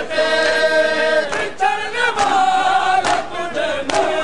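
A crowd of men chanting an Urdu nauha, a Shia lament, in unison, in a slow melody of long held notes. Sharp strikes come about once a second, the beat of matam: hands striking bare chests.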